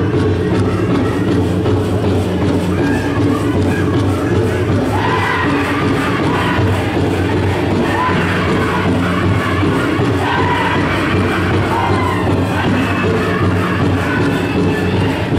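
Pow wow drum group playing a jingle dress contest song: a big drum struck in a steady, even beat, with high-pitched group singing that grows fuller about five seconds in.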